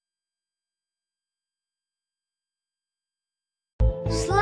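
Silence for almost the whole stretch; near the end, music starts abruptly with a loud low hit.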